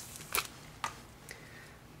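Thin plastic screen-protector packaging handled by hand: two short, light clicks, about a third of a second and just under a second in, then a fainter one.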